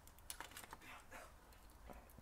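Faint, scattered clicks and light taps of plastic action figure parts being handled and fitted onto a plastic toy motorbike.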